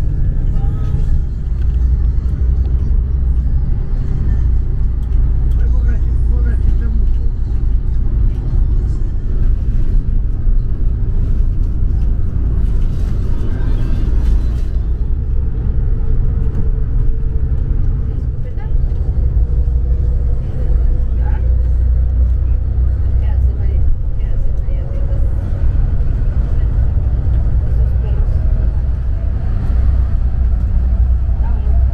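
Steady low rumble of a coach's engine and road noise heard from inside the bus while it drives, with a faint engine note that rises in pitch in the second half.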